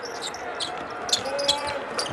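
A basketball being dribbled on a hardwood court, a run of irregular sharp bounces, with short faint squeaks.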